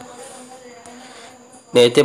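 Faint steady buzzing hum, then a man's voice starts near the end.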